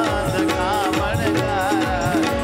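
Gujarati devotional kirtan sung by a solo voice with ornamented, wavering melody lines, over steady instrumental accompaniment and tabla strokes.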